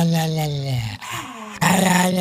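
A dog 'singing': a long, drawn-out pitched vocal that falls away about a second in, then a second long vocal begins shortly before the end.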